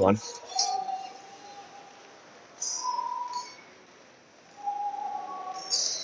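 Quiet ice-arena background with three faint held whistle-like tones, each lasting about a second, coming one after another.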